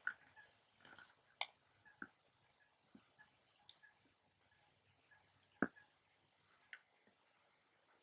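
Near silence with a few faint, scattered clicks, the clearest about five and a half seconds in, as pond water is sucked from a plastic bottle through an Aquamira Frontier Pro straw filter.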